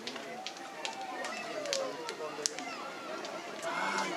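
A person's voice with a long drawn-out note whose pitch slides slowly down, over scattered sharp clicks.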